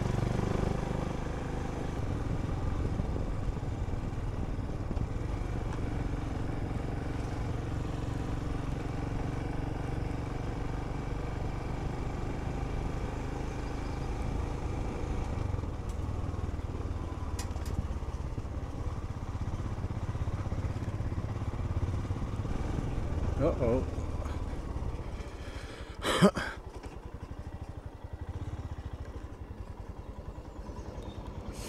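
Royal Enfield Himalayan's single-cylinder engine pulling steadily up a steep lane. Near the end there is a sharp short crack, and after it the engine runs noticeably quieter as the bike slows.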